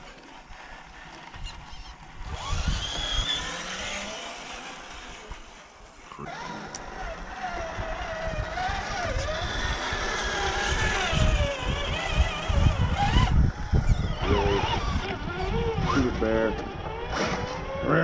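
Radio-controlled scale crawler trucks driving, their small electric motors and gearboxes whining in a pitch that wavers up and down with the throttle, over tyres crunching on dirt and gravel.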